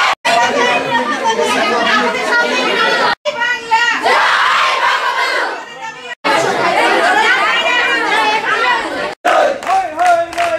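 A crowd of many voices shouting and talking over each other. The sound drops out very briefly four times, about every three seconds.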